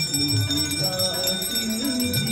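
Hand bells of a Hindu aarti ringing continuously with rapid strokes, over devotional music with a melodic line.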